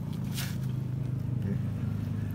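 A wooden board being shifted over moist manure bedding, a short scrape about half a second in, over a steady low mechanical hum.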